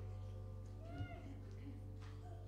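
A low steady hum with faint held tones from the stage instruments and sound system. About a second in, a brief rising-and-falling squeak, like a small voice, with a soft knock.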